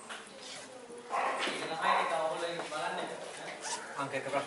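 A man speaking, after a quieter first second.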